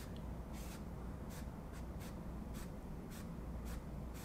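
Paintbrush dragged over stretched canvas in short, quick strokes, a nearly dry brush laying soft, watery acrylic marks for wood-grain texture. Faint scratchy swishes, about three a second.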